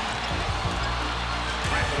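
A basketball bouncing on a hardwood court over arena crowd noise, under a music score that holds steady low notes. A play-by-play announcer's voice comes in near the end.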